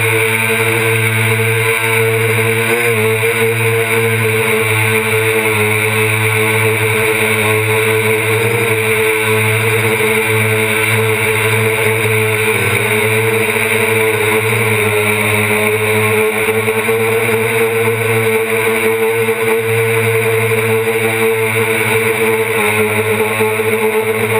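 DJI Flame Wheel 450 quadcopter's four brushless motors and propellers running steadily, heard up close from the camera on its frame: a steady drone with a strong held tone that shifts slightly in pitch now and then as the motors adjust.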